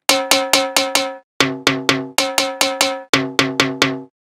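A pitched, organic-sounding percussion sample played in a fast repeating pattern, about four to five hits a second with two brief breaks. Each hit has a sharp attack and a clear ringing tone: a single-note tribal percussion lead for a techno drop.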